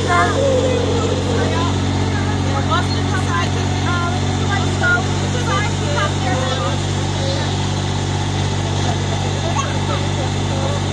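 Pickie Puffer miniature train running with a steady, even low drone as it carries its passengers along, with faint voices over it.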